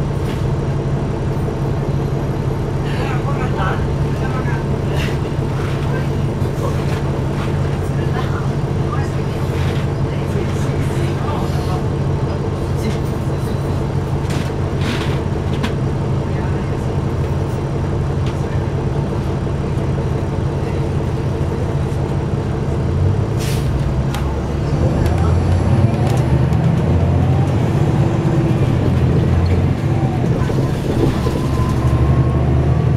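NABI 416 transit bus's diesel engine idling steadily, heard inside the cabin near the back while the bus stands at a light. About 24 seconds in, the engine note grows louder and rises as the bus pulls away.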